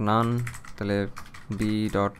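Typing on a computer keyboard, a few keystrokes, under a man's voice holding three drawn-out syllables with no clear words.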